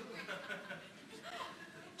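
Faint murmuring and soft chuckling from an audience in a hall.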